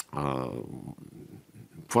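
A man's long, drawn-out hesitation sound, an 'uhh' held for about a second and a half and trailing off, after a click from the lips at the start; the speech resumes near the end.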